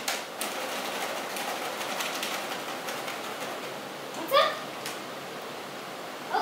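Crinkly plastic cat-treat bag being handled and shaken, making a dense crackling rustle for about three seconds. About four seconds in comes one short, rising meow from a cat.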